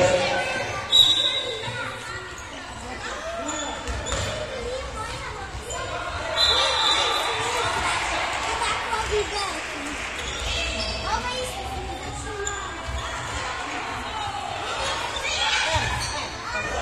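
A handball bouncing and knocking on a sports-hall floor during play, among children's voices and calls, all echoing in a large hall.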